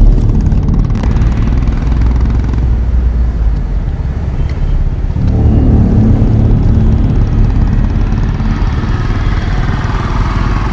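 Road vehicle engines running, with a motorcycle engine among them. The sound changes and grows fuller in the low end about five seconds in.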